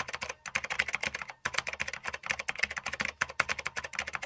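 Typing sound effect: a rapid run of keystroke clicks, briefly pausing twice in the first second and a half, laid over text being typed out on screen.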